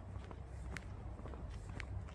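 Footsteps of people in sneakers walking on a concrete-paver path: soft, irregular steps over a steady low rumble.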